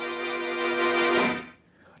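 Dramatic organ sting: a single held organ chord that fades out about one and a half seconds in.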